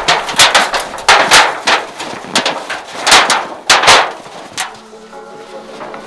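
A thin titanium stovepipe sheet being flexed and rolled up, giving about five loud, wobbling metallic crashes over the first four seconds. Music comes in near the end.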